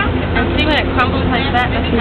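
Voices talking indistinctly over a steady low background rumble.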